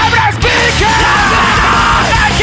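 Japanese thrashcore band playing fast and loud: distorted guitar, bass and drums with shouted vocals. There is a brief break about a third of a second in before the band comes back in.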